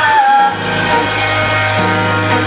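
Live band music. A held high note dips slightly and stops about half a second in, then a deep, steady bass note comes in under the band.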